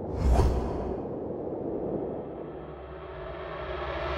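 A short whoosh about a third of a second in, followed by a low rumble that fades and then swells again.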